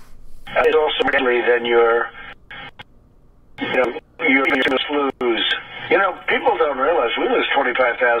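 A man speaking in a thin, telephone-like recording played back from a video, breaking off for about a second midway.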